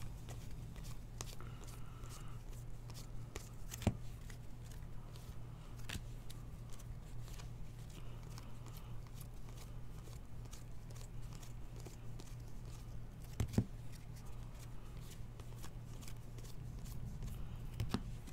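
A stack of baseball trading cards being handled and flipped through by hand: a run of soft clicks and rustles as each card slides off the stack, with two slightly louder knocks about four seconds in and near the end. A steady low hum runs underneath.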